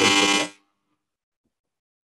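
A loud, buzzing, horn-like tone that stops about half a second in.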